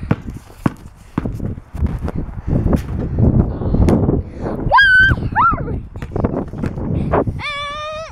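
Irregular knocks and thuds of a basketball game on a concrete driveway, with handling noise from a handheld camera. A girl gives a short high-pitched squeal about five seconds in and a long high-pitched cry near the end.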